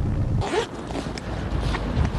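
Outdoor street noise with brief rustling and a few light clicks of handling, such as a bag or clothing being moved.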